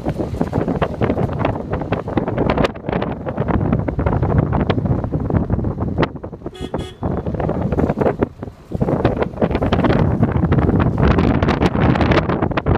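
Wind buffeting the microphone, with a short horn toot about six and a half seconds in.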